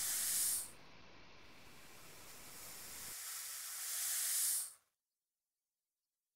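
A hissing noise that swells up and falls back twice, the second swell cutting off abruptly shortly before five seconds in, followed by dead silence.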